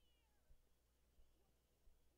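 Near silence: faint room tone with a few faint, high, chirping glides and a soft low thump about every two-thirds of a second.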